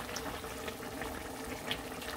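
Squid in a thin sauce boiling in a pot, a steady bubbling as the sauce reduces.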